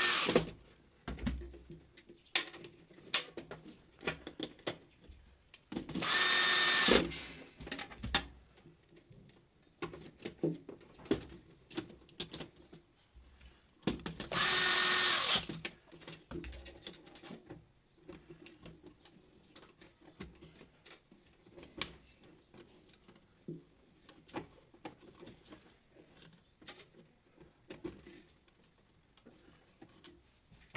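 Cordless electric screwdriver running in three short bursts of about a second each, the first right at the start, then about six and fourteen seconds in, typical of driving terminal screws on panel breakers. Between and after the bursts come light clicks and rustles of wires and plastic wire duct being handled.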